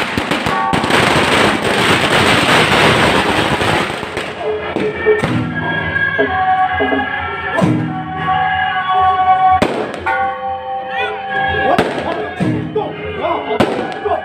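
A string of firecrackers crackling densely for a few seconds, followed by single sharp firecracker bangs about every two seconds, over procession music with long held notes.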